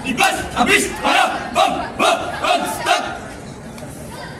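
A group of voices shouting in unison: a rhythmic run of about eight short drill shouts, roughly two a second, stopping about three seconds in.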